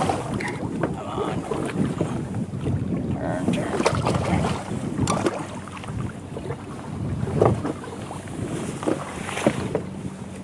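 Wind buffeting the microphone and water slapping against a small boat's hull, with scattered knocks and splashes as a fish is worked to the landing net. A faint steady hum comes in partway through.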